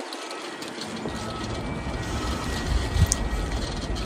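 Steady outdoor background rumble of distant engines, its low end filling in about half a second in and holding on.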